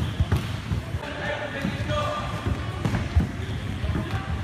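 Irregular dull thuds of workout equipment striking a wooden sports hall floor, several a second, with voices behind them.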